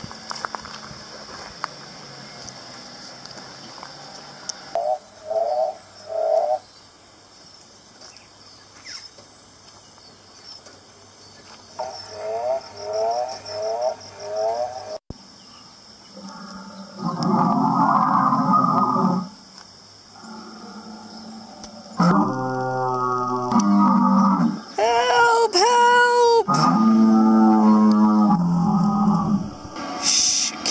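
Recorded dinosaur roars and bellows played through the speaker of an animatronic dinosaur. The long, loud calls come in the second half.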